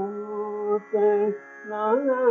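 Male voice singing Carnatic music in raga Kedaragowla, holding and bending long notes with two short breaks, over a faint steady drone.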